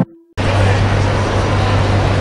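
A jingle's last held note fades out. After a brief gap, the steady din of a busy indoor concourse sets in, with a constant low hum under it.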